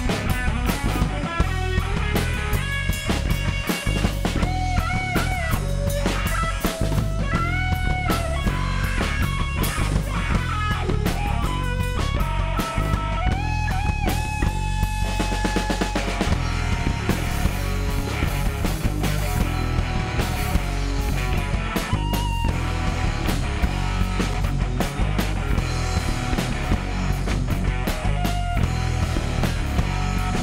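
A live rock band playing: electric guitar and drum kit, with a melody of bending notes that holds one long note for about two seconds in the middle.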